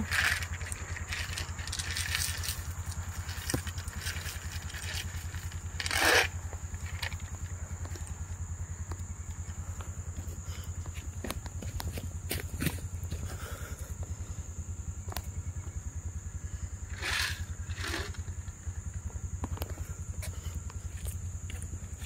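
Scattered rustles and crunches of footsteps and handling on dry leaf litter, the loudest about six seconds in, over a steady low hum and a constant thin high whine.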